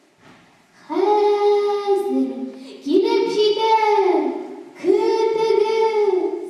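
A young girl's voice singing unaccompanied: three long, drawn-out phrases with held notes, each sliding off at the end, after a short pause at the start.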